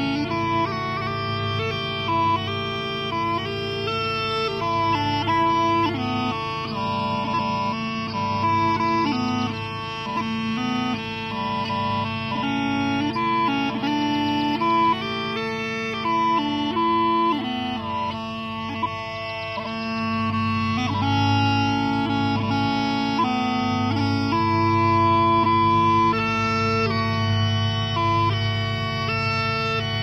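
Scottish smallpipes playing a tune: steady drones held under a chanter melody that moves quickly from note to note without a break.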